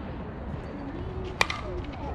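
Softball bat hitting a pitched ball: one sharp crack about a second and a half in.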